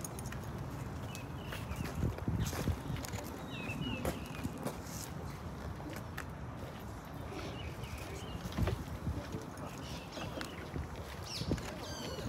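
Outdoor ambience dominated by a steady low rumble of wind on the microphone, with a few light knocks and faint voices in the background.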